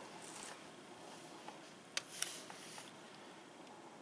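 Quiet handling of landscaping weed-block fabric and a tape measure being laid across it: faint rustling with two small clicks about two seconds in.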